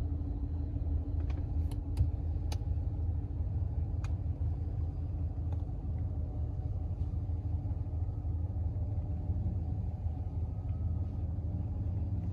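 Steady low rumble inside the cab of a 2021 Ram 1500 pickup, with a faint steady hum over it that fades out about eight seconds in. A few faint clicks come in the first few seconds.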